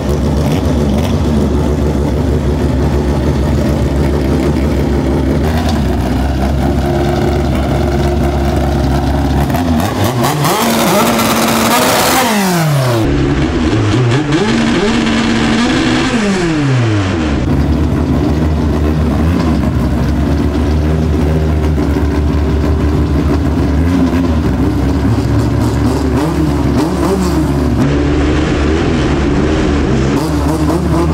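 Naturally aspirated Honda drag-race engines running loud at the start line, revving up and down in several rising and falling pitch sweeps about a third of the way in, then holding a steady rumble while staged. The later part is heard from inside a car's stripped cockpit.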